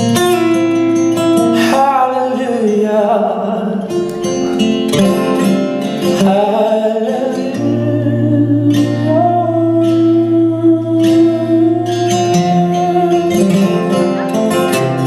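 A man singing a blues song over his own strummed acoustic guitar, with long sliding and held vocal notes.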